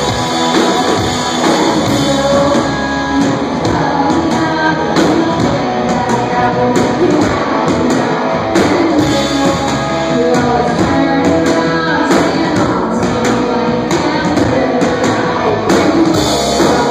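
A rock band playing a song live, with electric guitars and a drum kit.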